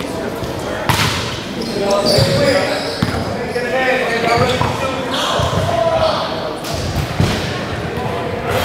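Basketball bouncing a few times on a gym floor before a free throw, sharp knocks over echoing chatter from the people in the gym.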